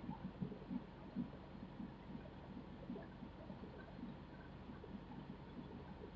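A quiet pause: a faint steady low hum with small, soft, irregular sounds on top.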